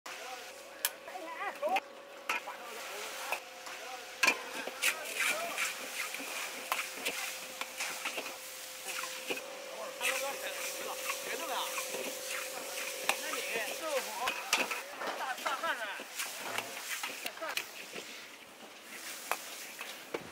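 Metal ladle scraping and clacking against a large iron wok as diced chicken and peppers are stir-fried over an open fire, with repeated sharp knocks.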